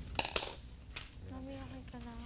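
Two quick sharp snips of scissors cutting near the start, with a fainter click about a second in, followed by a person's voice holding a drawn-out note.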